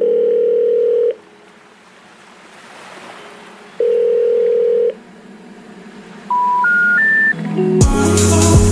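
Telephone line tones: two steady beeps about a second long, nearly three seconds apart, then three short notes stepping upward, the special information tone that comes before a 'number cannot be reached' recording.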